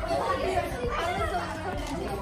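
Chatter of several voices talking over one another, with no single clear speaker.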